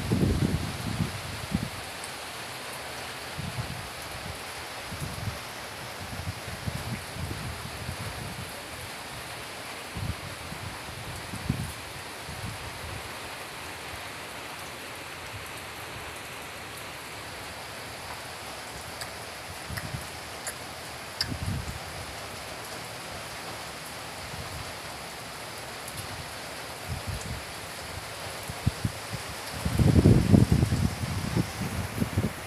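Steady hiss of rain falling, with gusts of wind rumbling on the microphone now and then, strongest near the start and again near the end.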